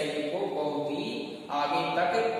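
Vocal chanting in long, melodic held notes that slide from pitch to pitch, pausing briefly about three-quarters of the way through.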